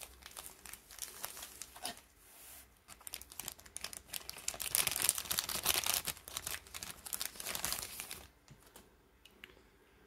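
Thin clear plastic bag crinkling and rustling as it is handled, in uneven bursts: softer at first, loudest in a long stretch through the middle, then dying away near the end.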